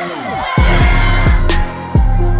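Hip-hop style backing music with deep bass kicks that slide down in pitch and ticking hi-hats, opening with a downward pitch sweep in the first half-second.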